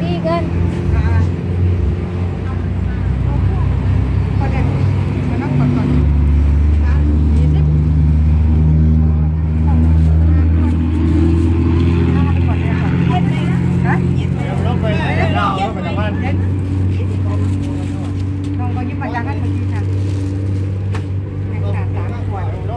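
A nearby engine running, a loud low drone that swells through the middle and eases later, with faint voices in the background.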